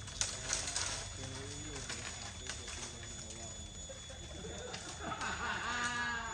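People's voices talking and calling out, faint through the middle and clearer near the end, with a few sharp clicks and knocks near the start. No chainsaw is running.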